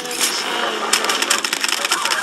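Film trailer soundtrack playing back: a held low tone, joined about a second in by a fast run of clattering clicks.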